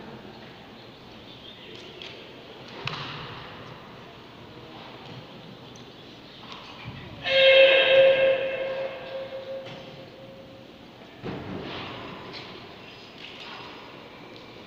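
A karate competitor's kiai: one loud, held shout on a steady pitch about seven seconds in, lingering in the hall's echo as it fades. There is a sharp thud about three seconds in and another about eleven seconds in.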